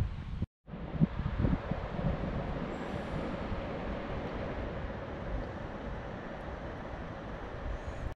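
Steady outdoor background rumble with wind on the microphone, a few soft knocks about a second in, and a brief cut-out of all sound shortly after the start.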